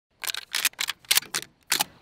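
Shells being loaded into a shotgun: six short, sharp metallic clicks and snaps, about one every quarter second.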